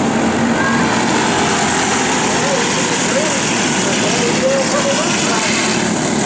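Racing kart engines running together: a loud, steady drone in which engine pitch wavers up and down.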